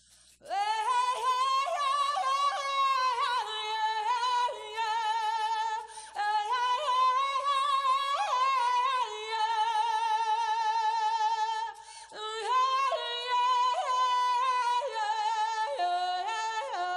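A woman singing a wordless prayer song on vocables, unaccompanied, in high held notes with strong vibrato. It comes in three long phrases, with short breaks about six and twelve seconds in.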